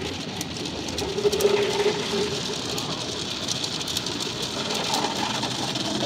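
Automatic car wash working over the car, heard from inside the cabin: a steady rush of spray and washing equipment against the body and glass, with scattered rattling taps.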